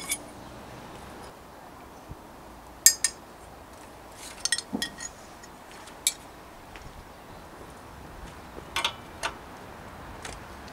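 Metal bicycle parts and tools clinking as the stem is pulled from a threaded headset and a headset spanner is fitted to the locknut. There are two sharp clinks about three seconds in, a quick cluster a little later, one more around six seconds, and two near the end.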